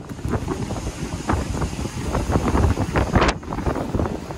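Wind buffeting a phone microphone on the open top deck of a moving bus: an irregular, gusty rumble with the strongest blast about three seconds in.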